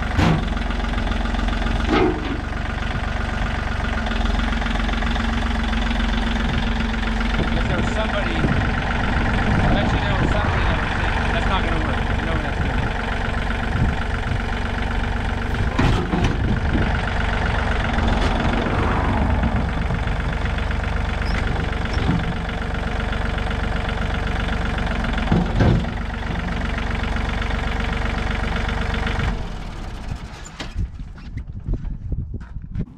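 John Deere compact tractor's diesel engine running steadily while its front loader carries a steel dumpster, with a few short knocks about two seconds in, around the middle and near the end. The engine sound drops away shortly before the end.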